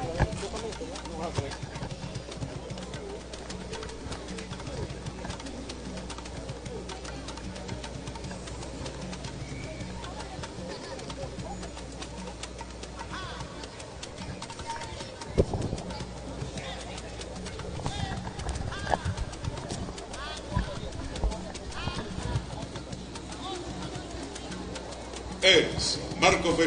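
Faint outdoor background of distant voices over a steady low hum, with a few short knocks.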